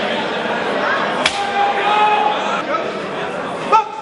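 Voices and calls from a seated crowd in a large hall, with a sharp crack about a second in and another just before the end.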